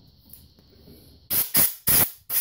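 Compressed-air blow gun giving two short hissing blasts, starting about a second and a half in. It is blowing metal chips out of a freshly tapped oil-outlet hole in a VW engine case.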